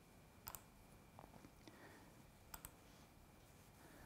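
Near silence broken by a few faint clicks of a computer mouse advancing presentation slides: one about half a second in and a quick pair a little past the middle.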